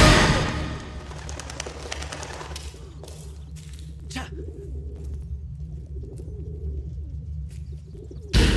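Pigeons cooing softly over a low, steady drone, just after loud film music dies away in the first second.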